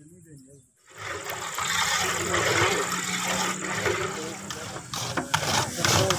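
Wooden paddles stirring and scraping dry wheat roasting in a large iron karahi. The sound starts suddenly about a second in, over a steady low hum and background voices.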